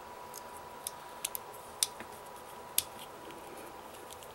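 Light plastic clicks from a Bakugan Sectanoid toy as its parts are folded by hand into ball form: a handful of short, scattered clicks.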